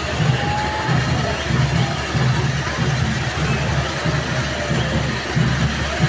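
Firework spark fountain hissing and crackling, with a steady low beat of about two or three pulses a second underneath.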